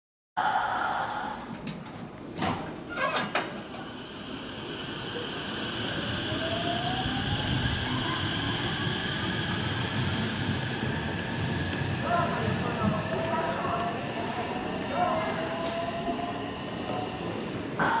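JR West 225-5100 series electric multiple unit moving through the station, its traction motor whine rising in pitch as it gets under way, over a steady rumble of wheels on rail. Two knocks come a few seconds in, and thin high squeals come in the second half.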